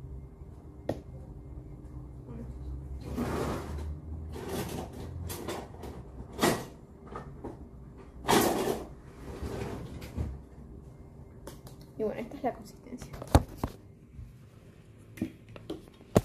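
Kitchen work noises: short scrapes and rustles of a utensil and a plastic container, then a few sharp knocks and clicks of things being handled and set down, the loudest a little before the end, over a low steady hum.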